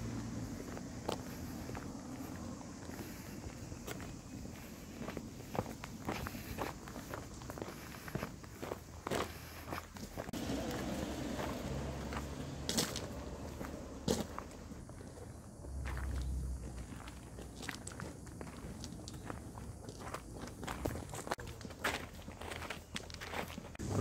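Footsteps on the gravel ballast of a narrow-gauge railway track: a few people walking, their steps making irregular short crunches.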